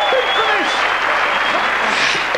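Audience applauding, with voices calling out over the clapping.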